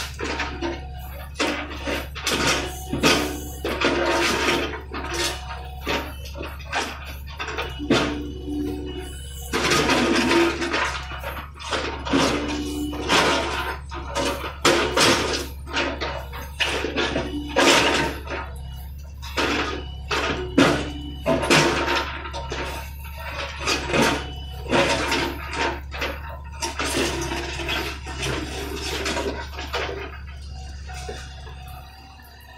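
John Deere 50D compact excavator's diesel engine running steadily while its steel bucket scrapes, knocks and crunches through broken concrete and dirt, in frequent irregular clatters.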